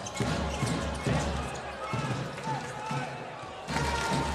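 A basketball dribbled on a hardwood court, bouncing over and over, over the arena's background noise and voices.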